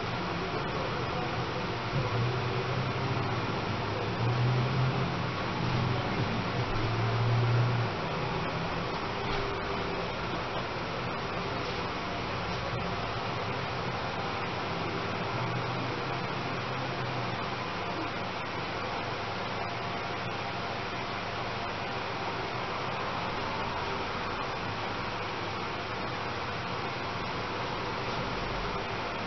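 Steady background hiss, like a room fan running, with some louder low rumbling between about two and eight seconds in.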